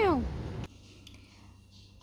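The end of a cat's meow, falling steeply in pitch, over outdoor background noise. It is cut off by a sharp click, and quiet room tone follows.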